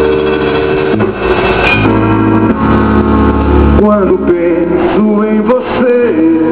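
A live band playing amplified music through a PA: sustained keyboard chords, with a wavering, bending melody line over them in the last couple of seconds.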